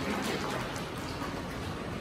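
A few last scattered claps dying away in the first second, over a steady hiss of hall noise.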